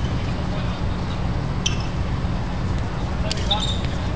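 Handball game on an outdoor court: players' voices calling faintly over a steady low rumble, with a few short high squeaks, one in the middle and two close together near the end.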